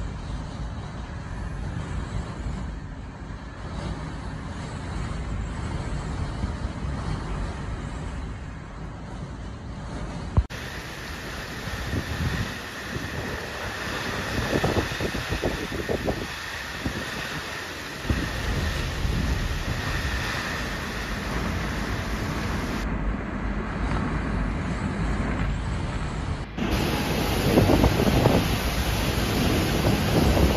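Typhoon wind and heavy rain: a steady roar with surging gusts, over several short clips. Near the end, stronger gusts buffet the microphone.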